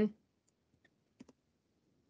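Two faint, short computer clicks close together about a second in, advancing the presentation slide, in otherwise near silence; the tail of a spoken word at the very start.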